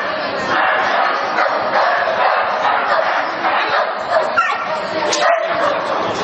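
Dogs barking and yipping almost without a break in a large indoor arena, mixed with people's voices.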